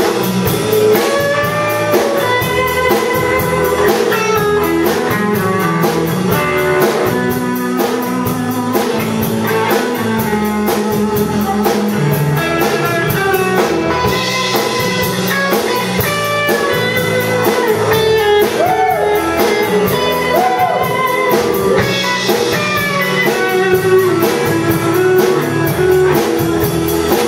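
Live blues-rock band playing an instrumental passage: an electric guitar plays a lead line with bent notes, over strummed acoustic guitar, bass and a drum kit keeping a steady beat.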